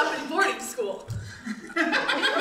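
Audience chuckling in response to a joke, the laughter dying down.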